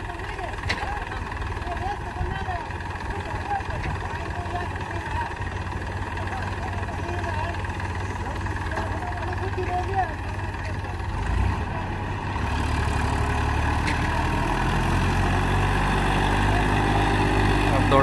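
Massey Ferguson 241 DI tractor's three-cylinder diesel engine running under load as the tractor, stuck with a soil-laden trolley in soft sand, tries to pull out; the engine grows louder about two-thirds of the way through as it is throttled up. Men's voices talk in the background during the first half.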